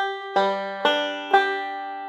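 Five-string banjo picked slowly in a four-note forward roll on open strings: four plucked notes about half a second apart, each left ringing.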